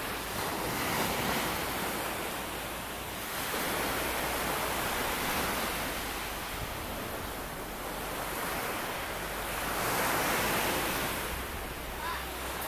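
Small sea waves breaking and washing up a dark pebble beach, the surf swelling and fading every few seconds.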